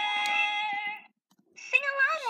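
A high-pitched voice holds one sung note for about a second, then cuts off. After a short pause, another high voice begins near the end with a sliding pitch.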